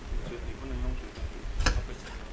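Faint, indistinct voices with low thumps, and a single sharp click about one and a half seconds in.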